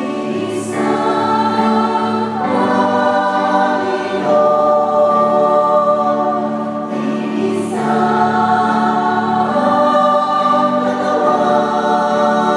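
Church choir of men's and women's voices singing a Tagalog hymn in slow, held chords that change every few seconds, over a steady low accompaniment note.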